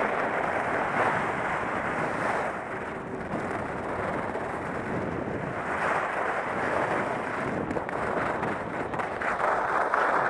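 Skis sliding over groomed snow with wind rushing across a helmet-mounted camera's microphone: a steady hiss that swells a little a few times.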